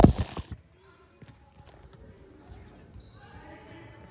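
One sharp volleyball impact right at the start, ringing out for about half a second in a large gym, then faint distant voices.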